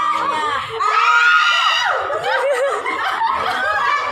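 A group of women laughing and calling out over one another, with one loud, high-pitched cry of laughter about a second in.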